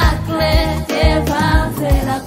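Gospel song with women singing over a steady beat.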